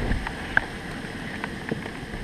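Steady rain, with scattered sharp taps and a low bump at the start as the plastic tub is handled.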